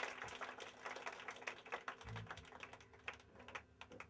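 Scattered clapping from a small crowd after a song ends, thinning out and fading away, with one short low thump about two seconds in.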